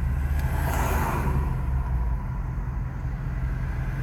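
Steady low vehicle rumble, with a rushing swell about a second in like a vehicle passing.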